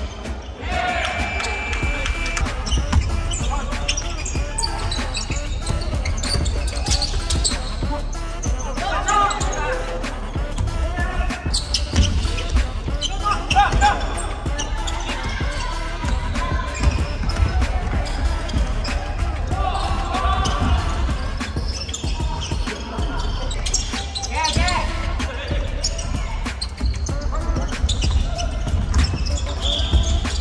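Basketballs bouncing on a hardwood gym floor during a game, with players' voices and a steady low rumble, echoing in a large hall.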